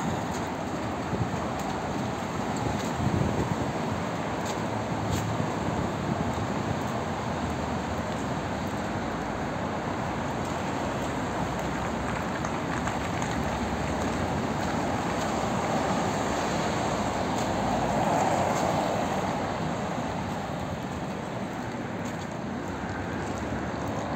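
Steady city street traffic noise, swelling louder for a few seconds near the end as a vehicle passes.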